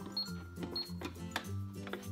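Toy cash register and handheld plastic scanner: two short high electronic beeps in the first second, with a few light plastic clicks.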